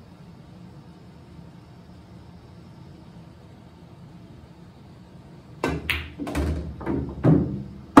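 A pool shot after a quiet stretch: near the end come a few sharp clicks of the cue tip striking the cue ball with a draw stroke and of billiard balls colliding. The stroke is one that the player says he did not hit well.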